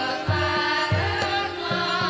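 Javanese gamelan ensemble playing, with low kendang drum strokes about three a second under steady ringing metallophone tones and a wavering higher melody line.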